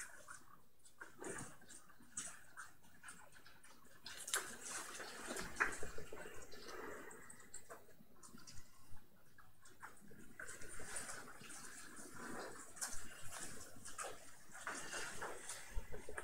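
Faint room noise with scattered small clicks and knocks.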